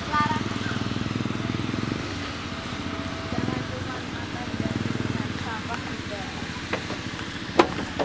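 An engine runs steadily with a low, pulsing hum, under faint voices. A single sharp click comes near the end.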